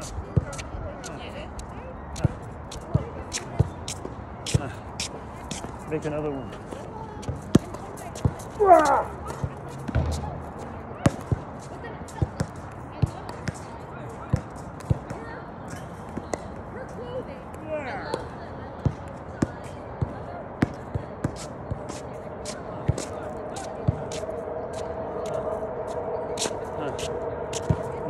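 A basketball being dribbled on an outdoor hard court: a steady run of sharp bounces through the whole stretch. A steady hum builds over the last few seconds.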